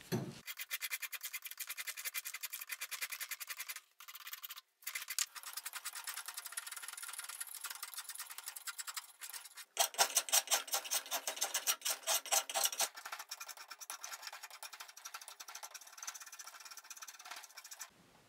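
A hand rasp scraping along an oak handle blank held in a vise, in quick repeated strokes. The strokes break off briefly a few times, and grow louder for a stretch in the middle.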